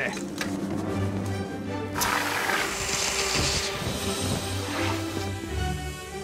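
A fire extinguisher sprays in one hissing burst about two seconds in, lasting a second or two, as it smothers a chip-pan fire in foam. Background music with long held notes plays throughout.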